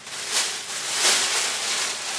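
A large shopping bag rustling as items are rummaged out of it, an uneven rustle that swells and fades, loudest about a second in.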